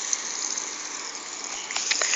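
Garden hose spraying water, a steady hiss of spray.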